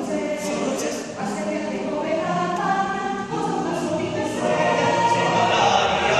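Mixed choir of men's and women's voices singing a choral piece in several-part harmony, growing louder about four seconds in.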